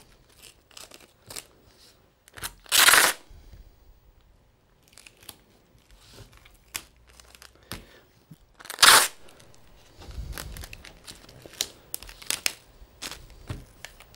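Packing tape ripped off its roll twice in loud, noisy rips, about three seconds in and again near nine seconds. Between them come small crinkles and taps as the tape strips are handled and pressed onto watercolour paper.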